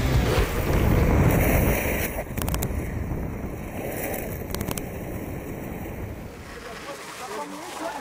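Downhill longboards running at speed on asphalt, with wind rushing over the microphone; loudest in the first two seconds, easing off after about six. Two sharp clicks come about two and a half and four and a half seconds in.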